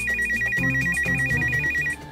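Electronic telephone ring: a fast warbling trill flipping between two high tones about ten times a second, stopping suddenly near the end.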